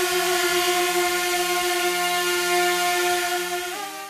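DJI Mini 2 drone hovering with propeller guards fitted: the steady, high buzz of its four motors and propellers. It wavers in pitch and fades near the end.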